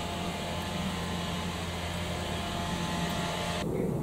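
A power tool's motor running steadily next door, a continuous hum with a steady pitch, cutting off suddenly shortly before the end.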